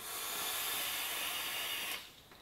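A drag on a Digiflavor Pilgrim GTA/RDTA rebuildable atomizer: a steady hiss of air drawn through its airflow, starting and stopping abruptly, about two seconds long.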